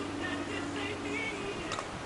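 A plastic wiffle ball bat strikes a wiffle ball once with a light, sharp crack near the end, over a steady low hum.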